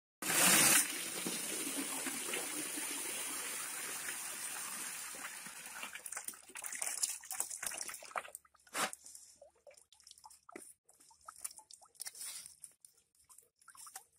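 Water poured from a tipped aluminium basin over a carcass in a plastic basket: a steady pour that starts suddenly, then tapers off after about five seconds. Scattered splashes and drips follow as hands work in the water.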